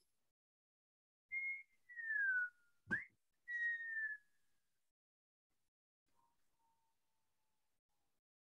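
A person whistling a few short notes: a brief level note, a falling note, a quick upward swoop, then another falling note.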